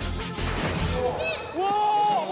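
Edited-in background music with a steady beat. About a second and a half in, the beat drops out and a drawn-out, bending vocal sound comes in louder.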